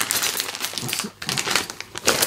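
Clear plastic parts bags crinkling and rustling as they are handled and sorted.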